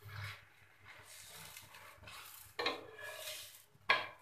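Flat metal spatula scraping and pressing a palak paratha around a nonstick tawa, over a faint sizzle of the paratha frying in oil. Two sharper clatters of the spatula against the pan, about two and a half seconds in and again near the end.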